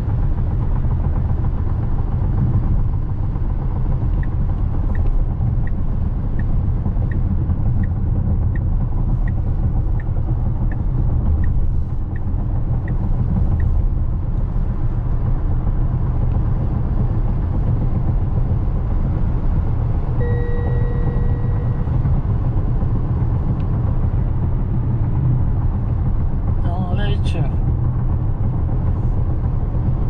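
Road and tyre noise inside the cabin of a Tesla Model X electric SUV at highway speed, a steady low rumble with no engine note. A run of turn-signal ticks, about one and a half a second, goes from about four seconds in until about thirteen seconds, and a short two-tone chime sounds about two-thirds of the way through.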